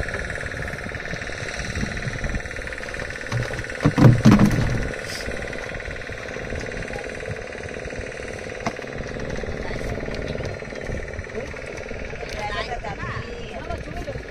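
The boat's long-shaft outboard motor running steadily, with one loud thump about four seconds in.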